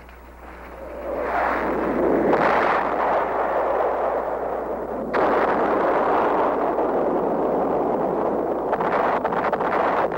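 Battle soundtrack of explosions: a dense roar that builds over the first two seconds, with sudden loud surges about two and five seconds in, then a sustained rumble with a few sharp cracks near the end.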